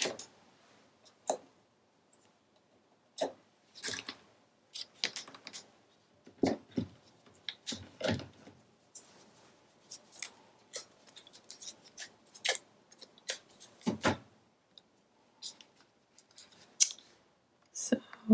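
Irregular short clicks, crackles and rustles of hands handling cardstock and a small craft magnet, peeling its adhesive backing and pressing it down.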